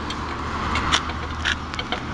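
Steady road-traffic background noise with a low hum, and a few faint short clicks.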